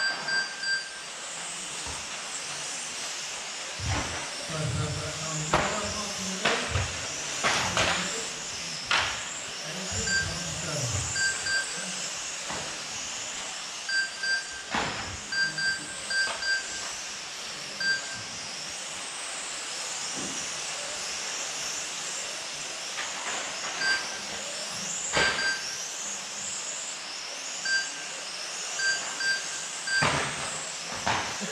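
Electric 1/12-scale radio-controlled racing cars running laps on an indoor track: the high whine of their motors rising and falling, with several sharp knocks. Short electronic beeps come in little clusters every few seconds, typical of a lap-timing system logging cars as they cross the line.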